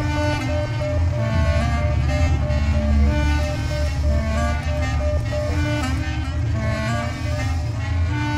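Live improvised music from clarinet, electric bass, drums and electronics: a dense low rumble underneath quick, repeating short pitched notes higher up.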